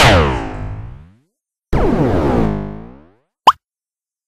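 Cartoon sound effects: two loud sudden sweeps falling in pitch, each fading out over about a second with a gap between them, then a short high blip near the end.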